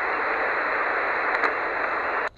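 Steady static hiss from a portable HF amateur radio transceiver's receiver, with a faint high tone above it.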